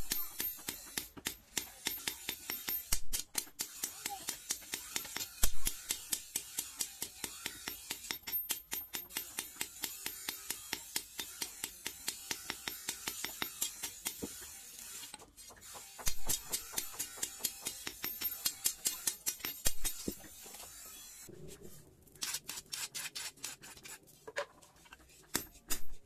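Hand hammer striking a red-hot steel sword blade on an anvil block in rapid, steady blows, about four a second, with a brief pause near the end before the strikes resume.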